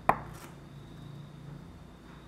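A single sharp knock or tap just after the start, fading out within about half a second, over a faint steady hum of room noise.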